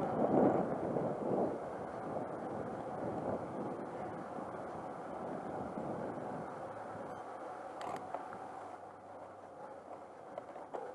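Wind rushing over an action camera's microphone as a road bike rolls along asphalt. It is loudest in the first second or two and then eases off, with a short click about eight seconds in.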